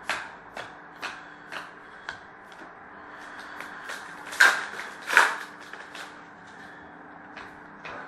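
Trading cards being handled and sorted on a glass tabletop: scattered soft clicks and rustles, with two louder rustles about four and five seconds in, over a faint steady hum.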